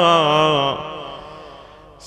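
A man chanting a Shia elegy solo, holding the last vowel of a line with a wavering, ornamented pitch. About two thirds of a second in, the note breaks off and fades away.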